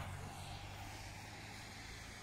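Steady outdoor background noise: an even hiss with a low, steady hum underneath.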